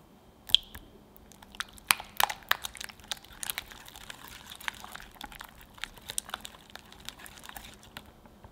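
Coated wire balloon whisk beating a thick cream cheese, egg and vanilla batter in a glass bowl. A single sharp tap with a brief ring about half a second in, then a run of quick, wet, clicking and squelching strokes that stops just before the end.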